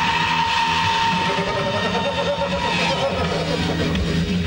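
A man's long, high-pitched yell, held on one note for about three seconds, over electric guitar music.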